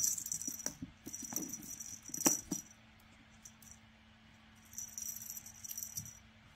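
A cat's worm wand toy jingling in three bursts as the cat bats and tugs at it, with two sharp knocks, one at the start and one about two seconds in.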